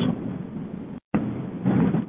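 Rumbling, hissy background noise of a telephone conference line in a gap between speakers, cutting out to silence for a moment about a second in; a voice starts faintly near the end.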